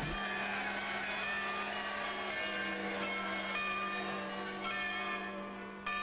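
Church bells pealing: several bells struck in overlapping strokes, their tones ringing on, with fresh strokes about halfway through and again near the end.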